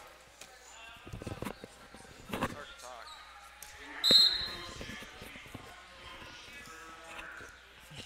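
Wrestling-arena ambience: dull thuds of footwork and bodies on the mat, with shouting voices from coaches and spectators. A short, sharp high-pitched sound about four seconds in is the loudest moment.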